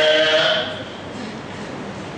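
A man's voice holding a long, drawn-out vowel for just under a second, then the quieter noise of a lecture hall.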